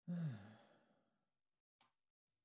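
A man sighs once: a breathy voiced exhale that falls in pitch and fades away over about a second. A brief click follows near the end.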